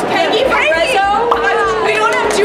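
Several people's voices talking and exclaiming over one another, with high excited calls about half a second in and chatter behind.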